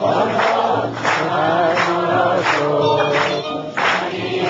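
Many voices singing together as a choir, with hands clapping in unison on the beat, about three claps every two seconds.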